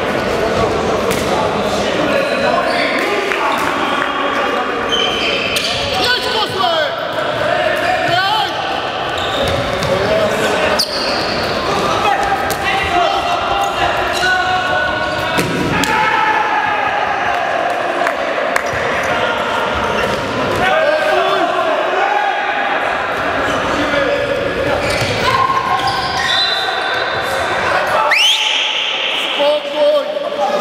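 Handball game play on an indoor court: the ball bouncing and slapping on the hard floor and into hands, with players' shouts and calls throughout and reverberating in the large sports hall.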